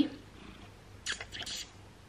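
A domestic cat purring close up, with a short scratchy burst about a second in.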